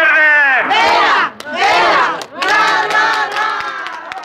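A large crowd cheering and shouting in three loud swells, one after another.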